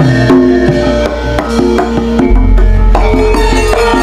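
Live Javanese gamelan: hand-struck kendang drum strokes over ringing bronze metallophone notes, with a deep low note coming in a little past halfway.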